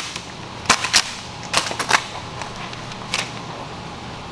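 Vinyl wrap film crackling and snapping as it is pulled and worked by hand over a car body panel, with about five sharp snaps over a low steady hum.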